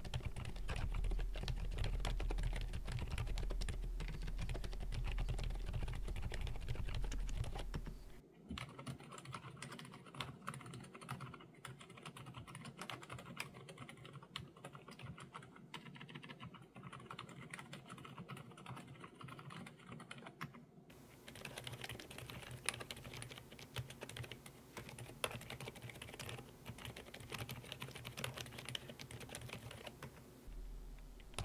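Continuous typing on an Aula F87 Pro keyboard with stock Outemu Silent Peach V2 silent linear switches: a dense run of quiet, dampened keystrokes. There is a low hum under the first part. About 8 s in the sound turns quieter and duller, switching to a noise-reduced phone mic, and about 21 s in it turns brighter, switching to a condenser mic.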